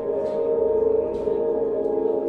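Solo electric bass played through a looper and effects: several sustained notes layered into a steady, ringing ambient drone, with a few faint string ticks on top.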